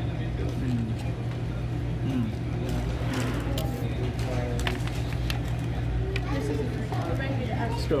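Restaurant room noise: a steady low hum under faint background voices, with a few light clicks.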